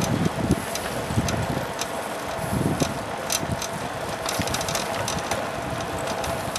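Steady road and wind noise from riding along a paved street, with a faint constant hum and irregular low thumps of wind buffeting the microphone.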